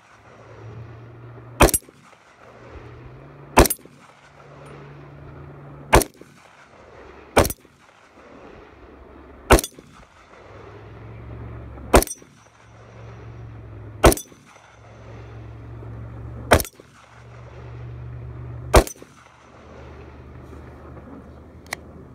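A Glock 20 10mm pistol fires nine shots, about one every two seconds, each a sharp crack.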